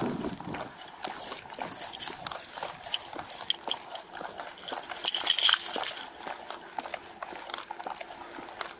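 A police officer's footsteps on a concrete sidewalk, heard through a body-worn camera, with clothing and duty gear rubbing and jingling against it in irregular clicks and rustles. The jingling is loudest about five seconds in.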